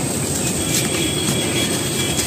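A dry sandy dirt block crumbling and grinding between bare hands: a steady gritty rustle of grains and fine powder.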